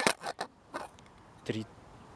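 A few short rustling clicks of handling noise as a handheld camera is swung around, bunched at the start with one more a little later, then a single short spoken word.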